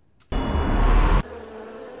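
Cinematic opening of a music video soundtrack. A loud hit with a heavy deep bass lasts about a second, then cuts off sharply into a steady, quieter buzzing drone.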